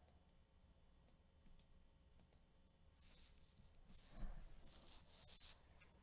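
Faint clicking of a computer mouse and keyboard over near silence, with a soft low thump about four seconds in.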